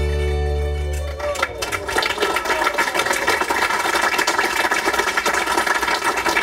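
An Appenzell folk band's last sustained chord rings out and cuts off about a second in. A busy hubbub of voices with rapid clatter follows.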